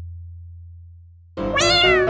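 A low hum from a sound-effect hit fades away, then about a second and a half in, a single cat meow rises and falls in pitch as light piano music starts.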